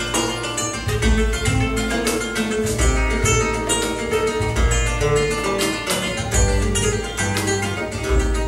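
Flamenco guitar playing a fast passage of plucked notes, accompanied by deep hand-drum strokes on a djembe.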